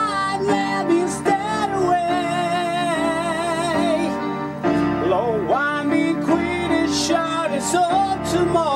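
A man singing an improvised operatic vocal line with wide vibrato, over sustained chords on an electronic keyboard. The voice and keyboard break off briefly a little past halfway, then resume.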